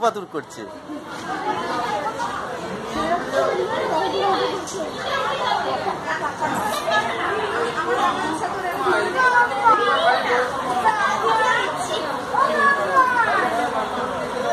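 Several people talking at once: overlapping chatter that runs on without a break.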